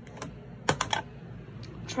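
Sharp clicks and taps of small hard objects being handled on a desk: a quick run of three or four loud ones around the middle, with lighter taps before and after.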